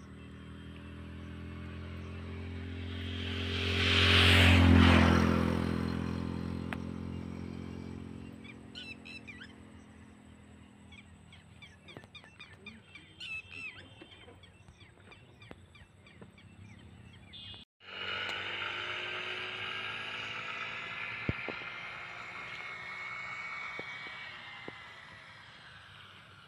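A motor vehicle passes by, growing louder to a peak about four to five seconds in and then fading away. Scattered faint chirps follow. After an abrupt break, a steadier outdoor background sound holds a long, slowly falling tone.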